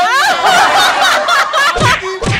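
Loud laughter from a small group of people, pulsing in quick bursts, with a dull thump near the end.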